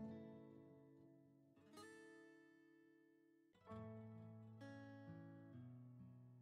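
Faint background music of plucked acoustic guitar: chords struck every second or two, each ringing out and fading, with brief near-silent gaps between.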